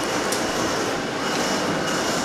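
A steady rushing mechanical noise that holds at one level, with no separate strikes or clicks in it.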